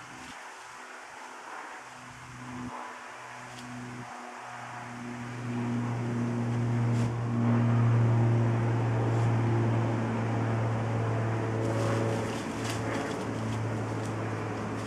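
A motor engine hum, steady in pitch, swelling in from about four seconds in, loudest about halfway through, then easing off slightly, with a few faint clicks near the end.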